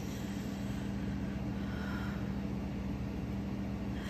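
Steady low hum and rumble with faint hiss, unchanging throughout: background room noise.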